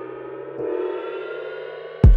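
Breakdown in an electronic hip-hop beat: the drums and bass drop out, leaving a held, many-layered synth tone whose pitch creeps slowly upward.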